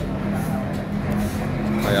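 A motor vehicle engine running steadily, a low even hum.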